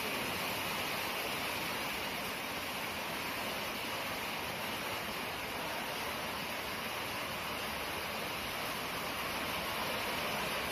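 Heavy rain pouring down, a dense, steady hiss.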